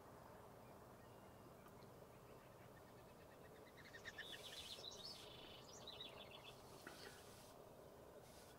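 Faint, high chirping song of a small bird, starting about four seconds in and going on for a few seconds as rapid runs of short notes, over a quiet outdoor background.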